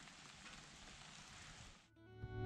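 Near silence: a faint, steady hiss of light rain, cut off abruptly just before the end.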